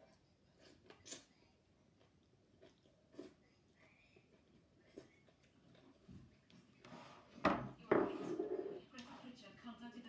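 A person chewing a mouthful of cucumber salad, with sparse soft mouth clicks. About seven and a half seconds in come two louder knocks close together, then a brief voice-like murmur.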